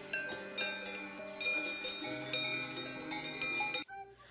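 Cowbells clanking: a run of ringing metal strikes at several different pitches that cuts off suddenly just before the end.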